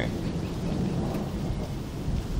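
Thunder rolling: a steady, low, continuous rumble.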